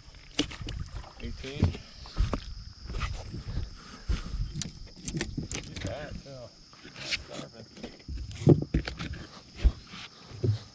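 Scattered knocks, clicks and rustles of a fish and tackle being handled on a bass boat's deck, with the loudest thumps near the end as the livewell lid is opened.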